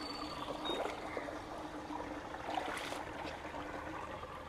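Water trickling steadily out of a culvert pipe into a shallow pool, with a few faint ticks.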